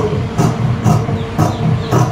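Large steel tailor's shears cutting through blouse fabric, four snips about half a second apart, over background music.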